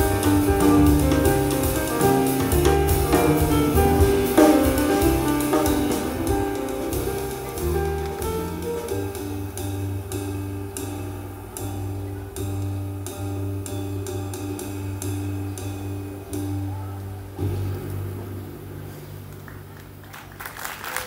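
Free jazz trio of piano, double bass and drum kit playing live: busy and dense at first, then thinning to long held low notes with sparse light strikes, and dying away near the end as the piece closes.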